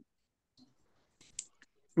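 Near silence with a single brief, faint click about a second and a half in, followed by a couple of tinier ticks.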